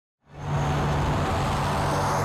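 Twin-turboprop Beechcraft King Air's engines and propellers running at high power as the plane rolls down the runway for takeoff. The sound fades in about a quarter second in and then holds as a steady low drone.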